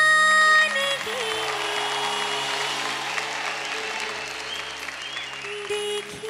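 A woman's long held sung note over backing music. About a second in, the audience breaks into applause, which runs on under the music until the singing resumes near the end.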